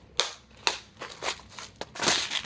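Hard plastic clicking and knocking, about five sharp clacks spread over two seconds, as a clear plastic compartment tray is handled and slid into the drawers of a plastic storage case.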